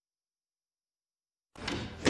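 Silence, then, about one and a half seconds in, a door opening suddenly as someone comes into a room.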